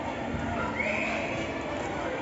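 Schoolgirls' voices and chatter in a schoolyard, with one high-pitched cry about a second in that lasts about half a second.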